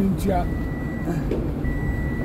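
An electronic vehicle warning beeper sounding a steady high tone on and off, about one beep every 1.2 seconds, twice here, over the low rumble of a vehicle on the move.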